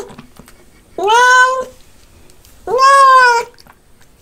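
Domestic cat meowing twice: two loud, drawn-out meows about a second and a half apart, each rising at the start and then holding steady.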